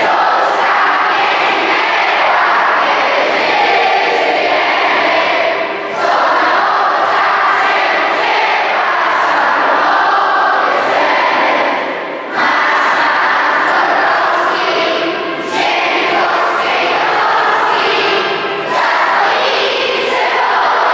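A large group of schoolchildren and adults singing together in unison, line after line, with brief breaths between the sung phrases.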